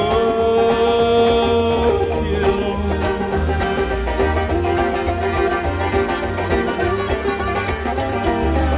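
Old-time string band playing live: fiddle and banjo play an instrumental break over a steady low beat, opening on a long held note.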